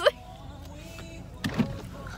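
Low steady hum inside a car's cabin, with a short vocal sound about one and a half seconds in.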